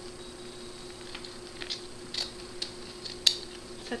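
Scissors cutting fabric ribbon in a few short, sharp snips, the loudest a little over three seconds in, over a steady low hum.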